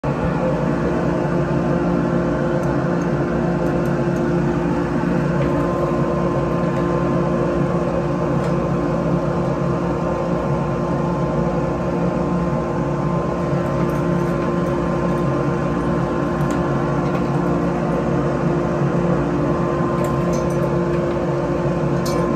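A workshop machine's motor running steadily, a constant drone with a fixed-pitch hum that does not rise or fall.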